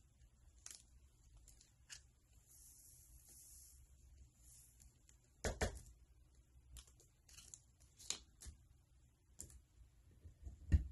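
Very faint handling sounds: a soft, high hiss as glitter trickles through a paper funnel into a small glass bottle, then a few light clicks and taps, the loudest about five and a half seconds in.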